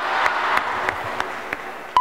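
A large crowd applauding, with scattered sharp individual claps standing out, easing off slightly toward the end.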